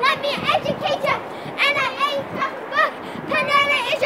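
Several children's high voices calling out and chattering over one another while they play.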